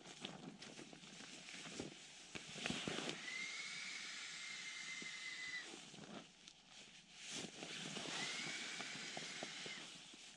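Air hissing into an Alpacka Mule packraft through its valve as the inflation bag is squeezed, twice, each push lasting two to three seconds and carrying a thin steady whistle. Crinkling of the bag's fabric comes between the pushes as it is filled again.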